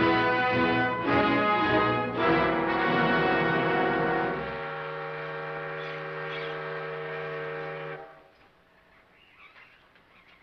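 Orchestral film-score music with brass, moving through changing chords, then settling on one long held low note that stops at about eight seconds, leaving near quiet.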